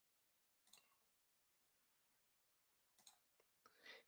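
Near silence, with two faint, short clicks, one about a second in and one near the end.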